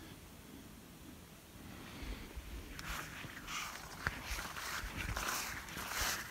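Footsteps and the swish of leaves brushing past as someone moves through garden beds of beans and corn. Faint at first, then from about two seconds in a run of irregular rustles with soft thuds and a click, growing louder.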